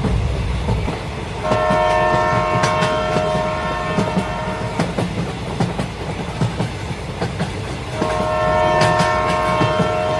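Recorded train sound playing for a model railway: a steady clatter of wheels over rail joints, with a long train horn blast twice, each lasting about three seconds.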